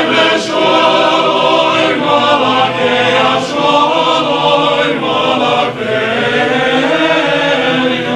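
Male synagogue choir singing cantorial music in full sustained chords, several voices together. The chords move to new notes about two, three and a half, and six seconds in.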